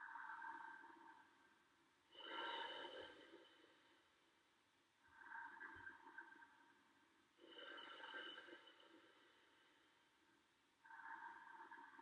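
A man breathing slowly and audibly while holding a yoga pose: five faint breaths, in and out in turn, each lasting about a second and coming roughly every two and a half seconds.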